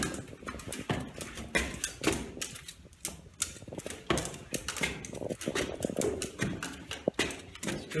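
A German Shorthaired Pointer walking down a staircase, its claws clicking and paws knocking on the stair treads, with a person's footsteps on the steps beside it: an irregular run of clicks and knocks, several a second.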